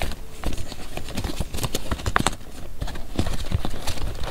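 Paper cards, tags and inserts being handled and shuffled by hand: an irregular run of crisp paper taps, clicks and rustles.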